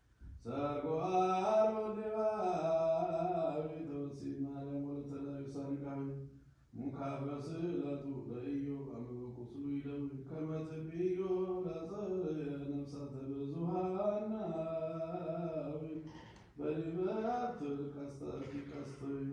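A single male voice singing Ethiopian Orthodox liturgical chant, with long held notes that waver slowly in pitch. It comes in three long phrases with short breaths between them.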